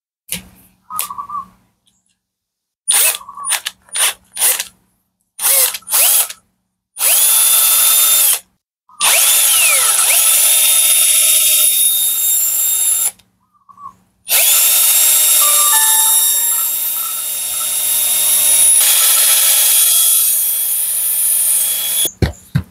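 Cordless drill spinning a valve against its seat in a Honda Wave 125S cylinder head to lap it with diamond lapping paste, to cure a leaking intake valve. It starts with several short trigger bursts, then runs for longer stretches of a few seconds each, its pitch dipping and rising as the speed changes.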